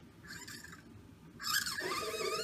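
A plastic rod squeaking as it is dragged through a pair of small drive wheels: a faint rubbing early on, then a louder squeal with a wavering pitch about one and a half seconds in.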